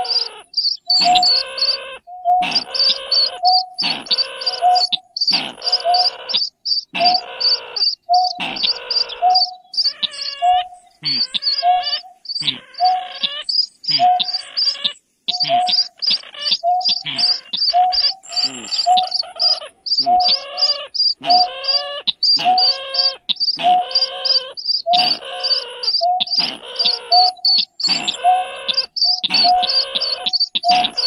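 Recorded calls of greater painted-snipe and slaty-breasted rail played as a bird-trapping lure, repeating about once a second; each call pairs a high rapid ticking with a lower hooting note. Rising, sweeping calls break the pattern about a third of the way in.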